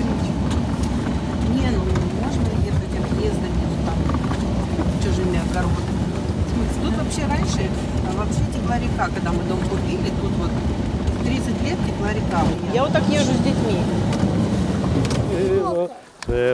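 Small SUV's cabin noise: the engine and tyres on a rough, snow-covered dirt road, a steady low rumble heard from inside the car.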